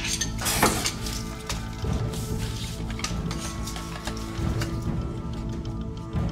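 Scuffling, knocks and scraping during a grab for a western brown snake behind a wooden cupboard, over steady background music.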